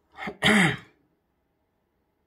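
A man clearing his throat once: a short catch, then a louder rasp that falls in pitch, all over within the first second.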